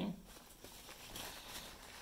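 Faint rustling of a paper towel being handled.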